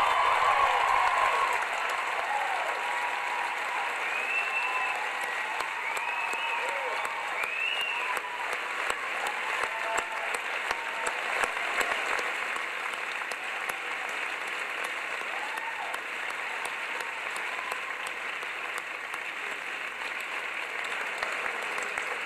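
Large audience applauding steadily after a speech, with a few voices whooping in the first several seconds; the applause is loudest at the start and slowly eases off.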